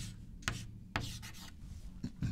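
Chalk writing on a chalkboard: a few short strokes about half a second apart, the last about a second in.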